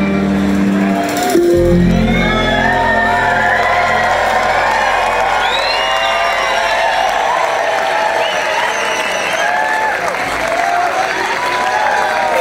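A bluegrass band's song ends on a last held chord about a second and a half in, with the upright bass ringing on for a few seconds. A large audience then cheers, whoops and applauds.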